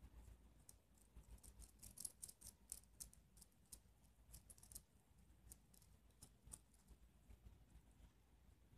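Faint, irregular small metal clicks and ticks from brass cabinet hinges and a small screw being fitted together by hand, thinning out in the last seconds.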